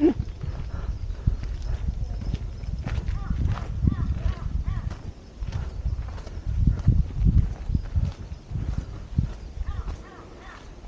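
Footsteps of a hiker walking on a dirt and rock forest trail: an uneven run of dull thuds, heard close up on the walker's own microphone.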